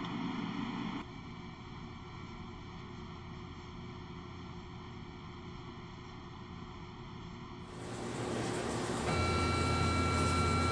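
Faint steady hiss for most of the stretch, then near the end a laser engraver's running noise comes in: a steady machine whir, joined about a second later by a low hum and a few steady high whines.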